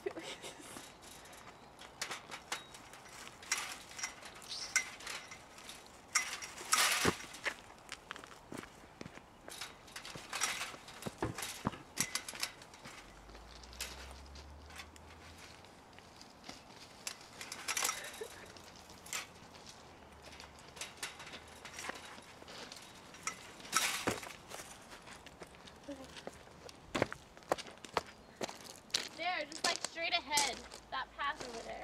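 Chain-link fence rattling and clinking with scattered sharp knocks as people climb over it, the loudest knocks about seven seconds in and again near twenty-four seconds.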